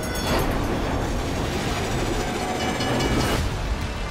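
A train running at speed: a loud, steady rumble and rushing noise of rail travel, with a brief bright rushing sweep just past three seconds in.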